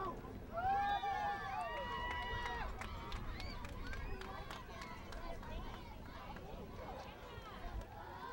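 Distant shouting from soccer players and spectators across an open field: a few calls in the first three seconds, one of them long and drawn out, then fainter scattered voices.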